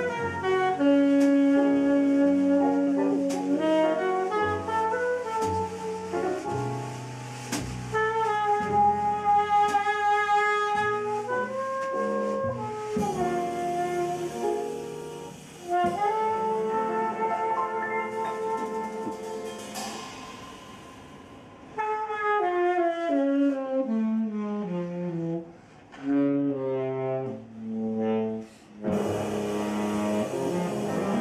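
Live jazz quartet: a saxophone leads with long held notes and a falling run about two-thirds of the way through, over double bass, piano and drums.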